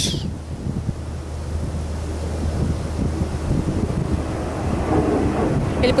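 Wind buffeting the microphone outdoors, a rough uneven rumble that stays low in pitch over a steady low hum.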